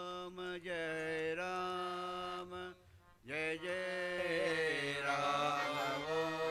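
Male voices chanting a devotional chant, holding long steady notes. There is a brief break about three seconds in, and then the next line starts with a slightly wavering melody.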